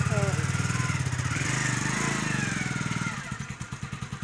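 Hero commuter motorcycle's single-cylinder four-stroke engine revving up, its pitch rising and falling over about three seconds as the bike moves off, then dropping back to an even idle near the end.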